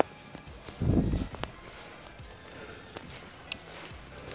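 Footsteps through dry leaf litter and brush, with scattered sharp crackles of leaves and twigs and a dull low thud about a second in.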